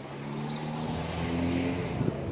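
A car's engine going by, growing louder as it comes, its pitch rising a little partway through as it speeds up.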